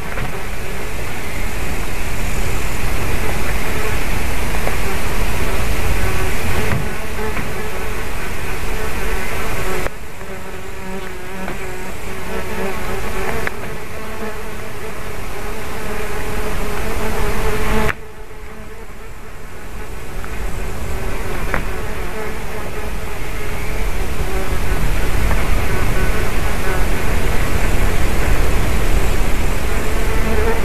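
Steady buzzing of insects close to the microphone, a continuous droning hum. It drops suddenly in loudness twice and then swells back.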